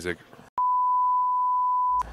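A steady electronic beep tone at about 1 kHz, one pure unchanging pitch, starting about half a second in and held loud for about a second and a half before cutting off abruptly.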